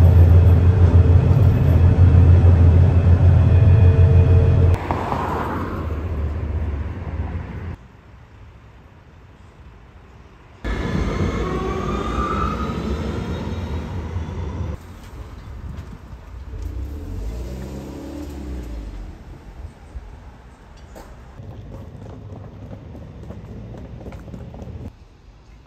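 Steady low rumble of a moving tram heard from inside for the first few seconds, then a string of shorter street recordings: a quiet stretch, a louder passage of traffic with whining tones that glide up and down, and quieter street noise near the end.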